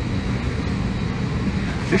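Steady rush and low hum of an Airbus A321's cabin ventilation while the airliner sits at the gate during boarding, with faint voices in the background.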